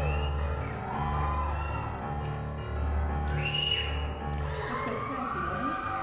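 A woman singing long wordless vocal lines that slide up and down in pitch, over a grand piano repeating sustained low bass notes in a slow, even pulse, recorded live in a theatre.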